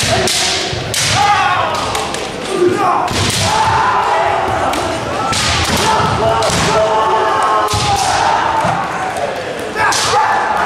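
Kendo fighters' kiai: long drawn-out shouts that rise and fall, overlapping through the bout, broken by sharp cracks of bamboo shinai strikes and the thud of stamping feet on the hall floor.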